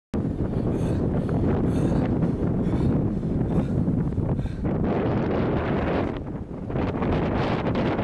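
Wind buffeting the camera microphone: a loud, rough rumble that starts abruptly and cuts off suddenly near the end.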